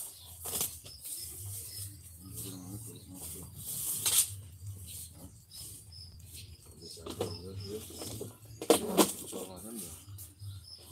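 Small birds chirping in the background, with low voices and a few sharp knocks, the loudest near the end.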